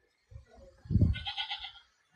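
A goat bleating once, a single wavering call of under a second starting about a second in, with low thumps just before it.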